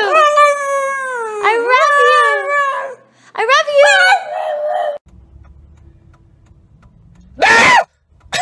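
A pug howling with its head raised: long wavering howls that glide up and down in pitch, in two stretches, the second ending about five seconds in. After that a low steady rumble of a car interior and one loud, short cry near the end.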